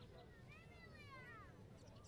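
A faint, drawn-out cry that rises and then falls in pitch, lasting about a second, over distant voices.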